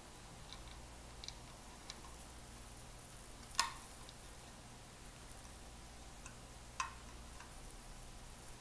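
Faint handling of a loudspeaker woofer's wiring: a few light ticks, then two sharp little clicks, one just under halfway and one near the end, as the lead's connector is worked onto the woofer terminals by hand.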